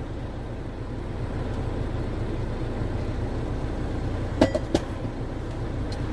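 Semi-truck diesel engine idling steadily, a low rumble heard from inside the cab. Two short sharp clicks about four and a half seconds in.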